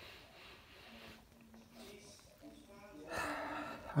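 A person sniffing a glass of lager to take in its aroma: faint breaths, then a louder sniff near the end.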